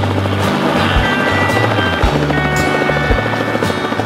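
A light helicopter passing low overhead, its rotor chop loud and fluttering, over a background song with steady held notes.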